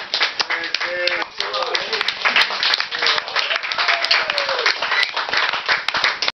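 Small audience clapping in separate sharp claps, with voices talking and calling out over it, just after an acoustic banjo, guitar and mandolin song has ended.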